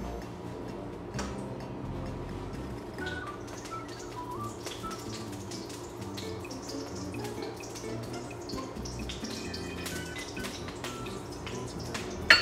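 Oil heating in a wok, crackling and ticking lightly as it gets hot, over soft background music.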